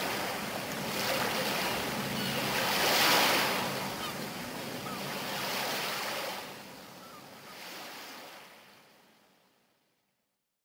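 A wash of noise without beat or melody, like surf, swelling and ebbing several times over a faint low drone, then fading out to silence just before the end: the ambient tail of an indie rock track.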